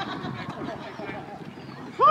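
Indistinct chatter of several overlapping voices from players and people on the sideline, with no single clear word.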